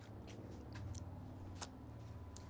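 Quiet background: a low steady rumble with a few faint, short, sharp clicks, the clearest one about one and a half seconds in.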